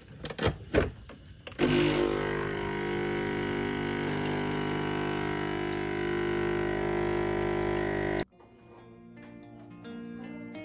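Capsule espresso machine brewing: a few clicks and knocks as the lever is closed and the button pressed, then the pump runs with a loud, steady buzzing hum for about six and a half seconds while the coffee pours, stopping suddenly. Soft plucked background music follows near the end.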